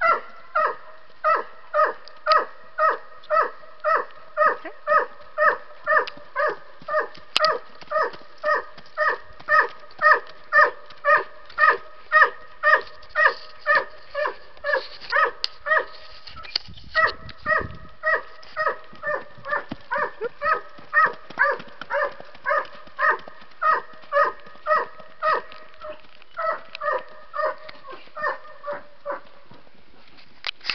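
A dog barking over and over at an even pace, one to two barks a second, with a short break a little past halfway.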